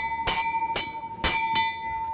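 A large bell rung by hand with its rope: four clapper strokes about half a second apart, each leaving a clear ringing tone that carries on after the last stroke.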